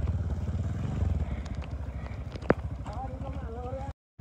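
Motorcycle engine running with a steady low pulsing as the bike crawls over a rocky trail. A faint voice calls near the end, and the sound cuts off suddenly just before the end.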